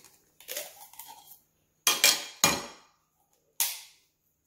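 Heavy cleaver striking a hand-held coconut, cracking the shell open: three sharp knocks in quick succession about two seconds in, then a single higher, thinner crack near the end.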